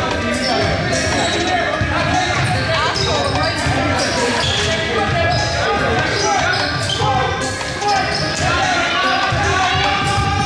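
Basketball dribbled and bouncing on a gym's hardwood floor during play, with players' shouts echoing in the large hall.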